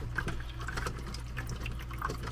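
Resin ExoTerra terrarium waterfall running: a steady stream of water trickling and splashing into its basin, over a steady low hum.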